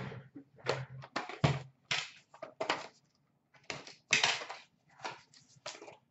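Hard plastic graded-card slabs being handled: about a dozen irregular short clacks and scrapes as the cases knock and slide against each other.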